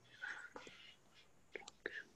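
Near silence with a faint murmured voice and a few soft clicks in the second half.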